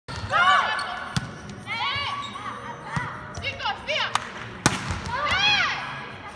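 Volleyball practice: four sharp smacks of a volleyball being hit, the last two close together, between short high-pitched shouts from the players.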